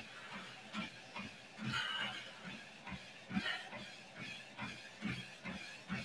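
Soft, steady footfalls of a jogger landing lightly on a Lifepro Swift folding treadmill's belt, a little over two steps a second, with breathing heard as brief hisses.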